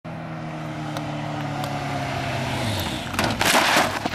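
Sport motorcycle engine running on approach, its note falling slightly as it slows, then dropping away about two and a half seconds in. Near the end there is a loud, rough crashing scrape: the bike brakes hard, flips onto its front and the rider falls.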